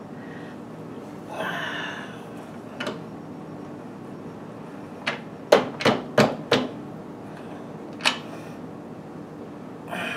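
Knocks and clicks of metal parts as a mini drill press is adjusted by hand. There is a brief scrape early on, then a quick run of sharp knocks in the middle and a single one later.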